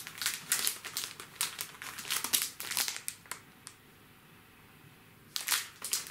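Clear plastic wrapping crinkling as a wrapped item is handled and opened by hand: quick crackling rustles for about three seconds, a short lull, then another crinkle near the end.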